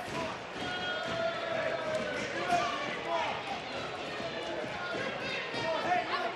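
Voices in a wrestling arena, including a drawn-out cry about a second in, over scattered thuds from the wrestling ring.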